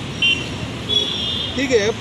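Steady street traffic noise with two short high-pitched horn toots, the second about a second in and longer than the first; a man's voice starts speaking near the end.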